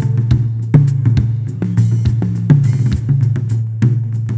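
Dance band music carried by drum kit and bass guitar alone: a steady beat of bass drum, snare and cymbal over a walking bass line, with no melody instrument playing.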